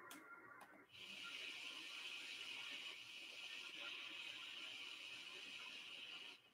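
Faint shortwave radio reception on 13,680 kHz: a low, steady hiss of static that starts about a second in, with a weak signal in it that does not have the distinct sound of NHK Radio Japan.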